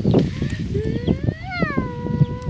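A small shaggy white dog giving one long whine that rises in pitch, peaks, then drops and holds level for about a second, with faint handling knocks underneath.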